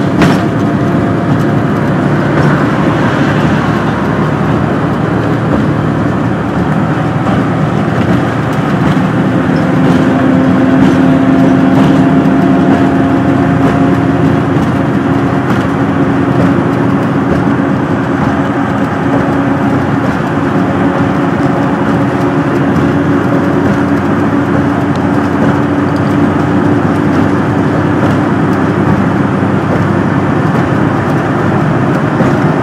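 Steady ride noise of a road vehicle travelling at speed, heard from inside. A brief knock comes right at the start, and a low steady hum rises out of the noise about nine seconds in and fades near the end.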